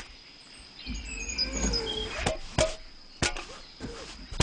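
Cartoon sound effects over a steady high background whine. About a second in, a low rumble with gliding, wavering pitch lasts about a second, followed by four sharp clicks or knocks in the second half.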